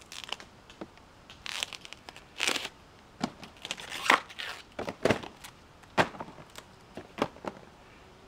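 Tough outer bracts being peeled and torn off a banana flower by hand: a run of irregular rips and sharp snaps, the sharpest in the middle of the stretch.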